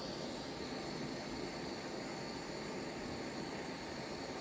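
Handheld butane kitchen torch burning with a steady hiss, its blue flame played over a silver clay pendant to fire it into fine silver.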